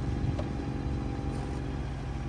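Ford Bronco Badlands engine running low and steady at crawling speed as the truck creeps up a slickrock ledge.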